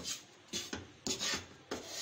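Wooden spatula scraping and stirring desiccated coconut around a nonstick frying pan, in repeated scratchy strokes about two a second, as the coconut dry-roasts on a low flame.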